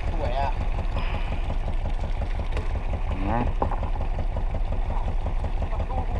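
Fishing boat's engine idling with a steady, rhythmic low throb.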